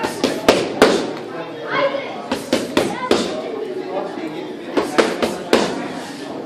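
Sharp slapping smacks in quick clusters of two to four, three groups in all, over indistinct crowd chatter in a large room.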